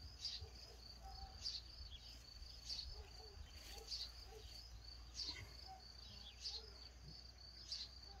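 Faint, steady high trill of crickets chirping, with a few short, higher chirps over it about once a second.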